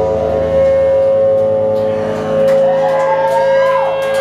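Electric guitar feedback through the amplifiers: a steady, loud held tone with a second, wavering tone that slides upward about halfway through and drops away near the end.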